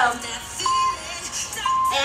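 Background pop music with singing, over which an interval timer gives two short, steady beeps about a second apart, counting down to the start of the next 20-second work interval.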